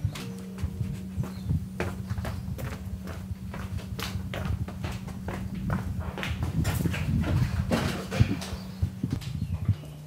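Footsteps on a wooden floor, mixed with knocks and rustles from a handheld camera being carried, over a low steady hum. The steps and knocks come irregularly and get busier about six seconds in.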